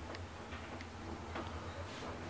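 Old traction elevator car travelling upward: a steady low hum with four faint, evenly spaced clicks.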